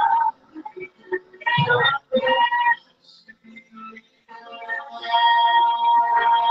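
A man's voice singing through a microphone and PA in short loud phrases with held notes, with a longer held note from about five seconds in.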